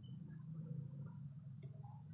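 A low, steady hum with a few faint small handling sounds over it.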